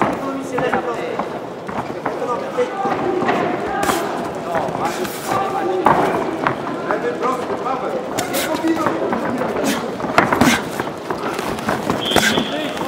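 Men's voices shouting from ringside in a sports hall, with several sharp smacks of boxing gloves landing during the exchanges, the loudest about halfway through and near the end.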